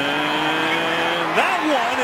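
A male TV commentator's voice holding one long drawn-out word for about a second and a half, then speaking on.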